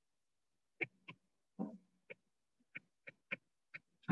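Faint, irregular taps of a pen stylus on a writing tablet during handwriting, about eight short clicks spread over the last three seconds, one of them a little longer with a low hum.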